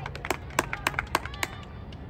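Spectators clapping: a quick run of about ten claps, about seven a second, that stops about a second and a half in. Under the claps is a steady low crowd background.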